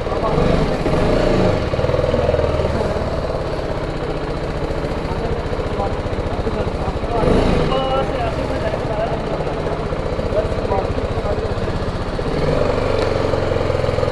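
Motorcycle engine running at low revs. There is a brief rise and fall in revs about a second in, then a steady low-speed run as the bike rolls off.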